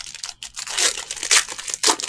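Foil trading-card pack wrapper being torn open and crinkled by hand, a run of crackles with the loudest rips about one and a half and two seconds in.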